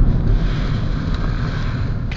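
Tyre and road noise inside the cabin of a moving VW Jetta, a steady low rumble with the engine barely heard. The noise comes up through the floor pan, which the driver thinks could have had more soundproofing.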